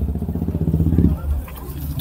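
Motorcycle engine running with a low, fast pulsing that swells briefly and then fades away a little over a second in.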